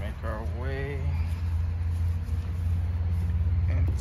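A voice speaks briefly in the first second, over a steady low rumble.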